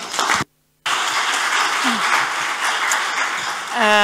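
Audience applauding: a steady patter of many hands clapping. It is broken by a short gap of total silence about half a second in.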